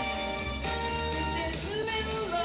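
A woman singing into a handheld microphone over instrumental accompaniment with a steady bass line, her held notes wavering with vibrato.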